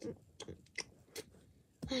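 Mouth-made chewing and munching noises: a handful of short, separate smacks and crunches, imitating a horse eating apples.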